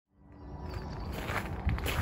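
Footsteps on a gravel path, fading in from silence, with a step every few tenths of a second from a little past the middle.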